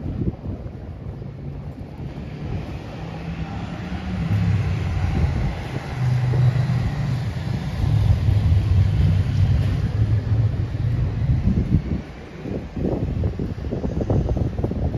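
Delivery van's engine idling: a low, steady hum that grows louder for several seconds, then fades near the end, with wind noise on the microphone.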